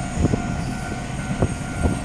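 Steady low vehicle rumble with a few dull thumps and a faint steady whine running through it.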